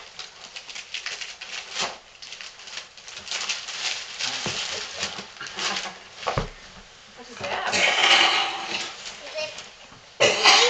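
Paper and plastic packaging rustling and crinkling as gifts are handled and unwrapped, with a louder stretch of rustling near the end.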